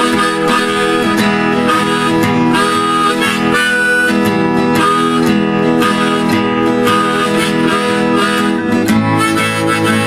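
Acoustic guitar strummed together with a harmonica played in a neck rack, a simple blues. The harmonica holds long notes over steady, regular strumming, with a change of chord near the end.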